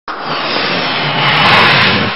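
Whoosh sound effect of a news channel's animated logo intro: a loud rushing noise that swells to a peak about a second and a half in.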